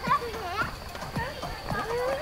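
Footsteps on a hard garden path, short knocks every quarter to half second, mixed with people's voices talking. A faint steady high tone runs underneath.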